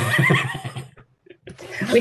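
A person laughing, a burst lasting about a second, heard over a video call, followed by the start of speech.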